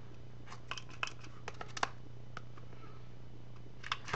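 Quiet handling of paper pages with a Crop-A-Dile hand-held hole punch: a run of short clicks and paper rustles in the first half, one more click near the end, over a faint steady hum.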